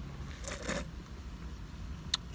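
Low steady rumble of a car interior, with a brief rustle about half a second in as the sandwich and cup are handled.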